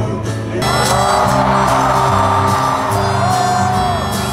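Live band music played over a concert PA, heard from within the audience, with singing. The sound fills out about half a second in.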